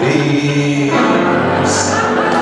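Closing bars of a live jazz vocal number with band: the final low chord is held and rings out. A burst of high hiss joins near the end.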